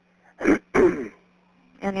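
A person clearing their throat twice in quick succession over a recorded phone line, the second clear longer with a falling pitch. A steady low hum runs underneath on the line.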